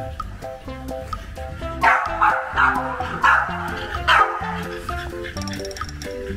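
A French bulldog barking in a quick run of about five short barks through the middle of the clip, over background music.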